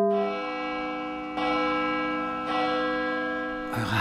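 Music of ringing bell-like tones: a held chord dies away slowly, and two new bell strikes come in about a second and a half and two and a half seconds in.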